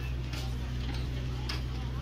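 Footsteps on a paved street, sharp steps about every half second, over a steady low rumble of street noise.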